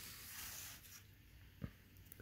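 Faint rustle of cardboard trading cards (1989 Upper Deck baseball cards) sliding against each other as the stack is flipped through, with a single soft click about one and a half seconds in.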